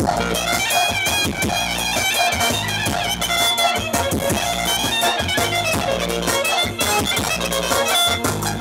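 Live band music played loud through PA speakers: a clarinet leads a fast, ornamented melody over a steady bass beat.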